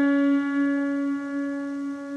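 A piano-toned keyboard note held down and slowly fading away, with no new note struck.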